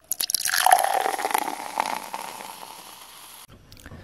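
A title-reveal sound effect: a hiss with a patter of small clicks and a brief ringing tone, fading away over about three seconds.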